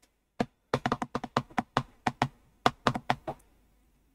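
Typing on a computer keyboard: a quick, irregular run of about a dozen key clicks that stops shortly before the end.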